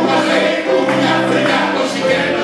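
Live ensemble of several voices singing together with accompaniment, holding long sustained notes as a chord.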